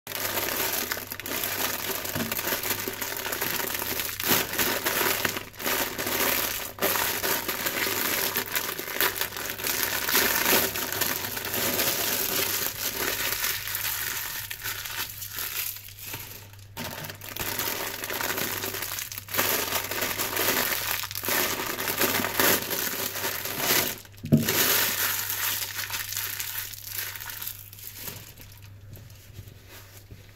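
Clear plastic sponge wrappers crinkling and rustling almost without a break as gloved hands open them and pull out the foam sponges, with a few brief pauses.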